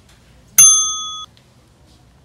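A single bright bell ding that starts sharply about half a second in, rings for under a second and then cuts off abruptly. It is much louder than the faint store background, like an added sound effect.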